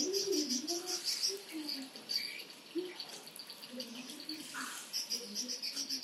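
Insects, likely crickets, chirping in a rapid, even pulsing trill that fades in the middle and returns near the end, with faint low voices underneath.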